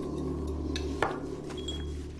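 Tableware at a dinner table: a sharp clink about a second in, such as a glass set down or cutlery on a plate, with a fainter tap just before it, over a steady low drone.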